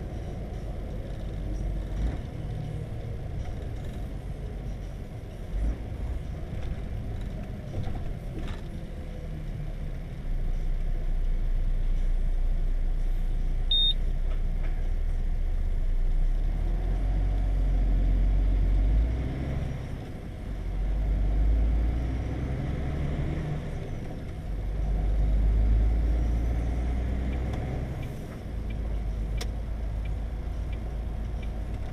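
Heavy truck heard from inside the cab: continuous low engine and road rumble that swells and eases as the truck slows through a toll booth and pulls away again. A single short high beep sounds about halfway through.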